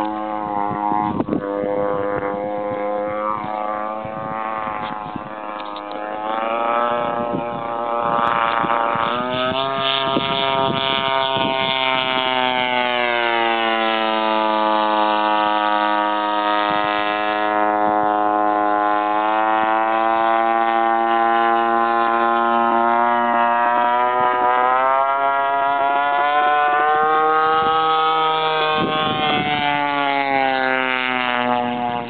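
Custom Stiletto RC speed plane's engine and propeller screaming past at high speed, the pitch sliding up and down as it makes its passes. It is softer for the first several seconds, then louder from about nine seconds in with a sharp rise in pitch and a slow fall, and it climbs again near the end.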